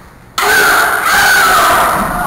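Loud shouting voices break out suddenly about a third of a second in and carry on for about two seconds, wavering in pitch, as one fighter throws the other to the mat.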